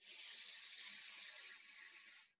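A person's deep in-breath: a steady breathy hiss lasting about two seconds, heard over a video-call line.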